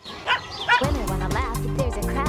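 A small dog yips a few times, then an upbeat commercial jingle with a steady beat kicks in about a second in.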